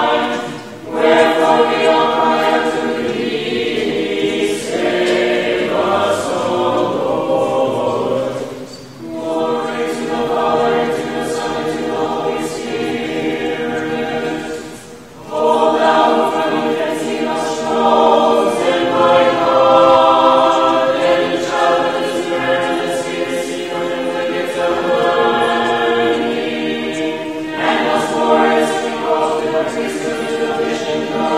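Small mixed choir of men's and women's voices singing an Orthodox liturgical hymn a cappella, in sustained chords. The singing breaks off briefly between phrases about 1, 9 and 15 seconds in.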